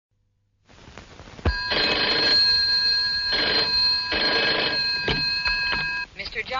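Telephone bell ringing in three short bursts over a steady high ringing tone, with a few clicks near the end.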